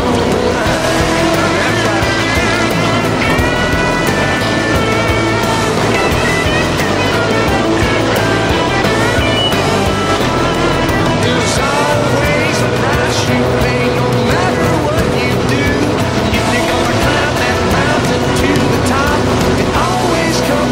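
Music playing over the sound of winged RaceSaver sprint cars racing, their engines running at speed.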